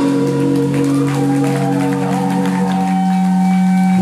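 Electric guitars and bass ringing out on one held chord through the amplifiers at the end of a song, steady and loud, with a higher tone that wavers and bends in pitch partway through.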